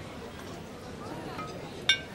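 Low murmur of diners' voices, with a single sharp glass clink that rings briefly near the end.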